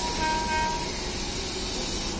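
A short horn toot lasting under a second, heard over the steady hiss and low hum of an arriving passenger train.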